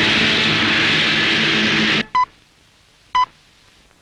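A loud rushing noise with steady musical tones under it cuts off suddenly about two seconds in. Then a desk telephone gives two short electronic rings about a second apart.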